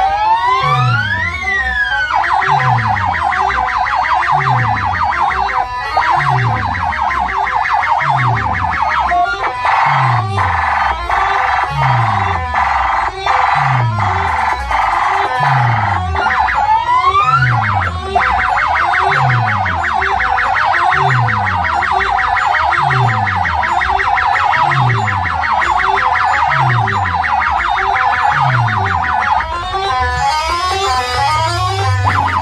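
Loud DJ dance music blasting from horn-loudspeaker sound rigs: a deep bass kick about once a second under a fast buzzing synth pattern, with rising siren-like sweeps near the start and again about halfway.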